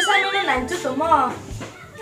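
A woman talking over background music with a soft beat about once a second. In the first half-second a high electronic tone wobbles up and down several times a second.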